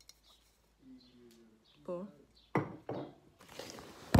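Handling noise as objects are moved close to the microphone: a sharp knock about two and a half seconds in, then a faint rustle near the end, around a short spoken word.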